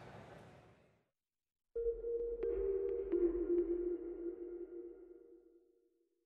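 Short electronic music sting for a closing logo: a sustained synth tone starts suddenly, steps down in pitch about a second later, and slowly fades out.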